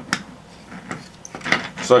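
A few light clicks and knocks from the plastic Tamiya Lunchbox chassis being handled and set down on a tabletop.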